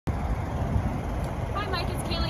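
Wind buffeting the microphone: an uneven low rumble throughout, with a woman starting to speak near the end.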